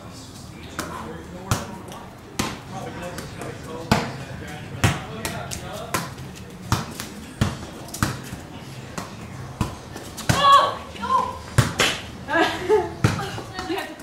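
A ball thumping again and again, struck or bouncing about once a second at an uneven pace, with voices near the end.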